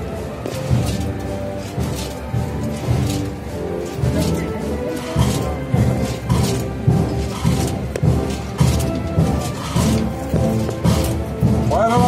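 Wind band playing a Holy Week processional march, brass and woodwinds holding sustained notes over drum strokes.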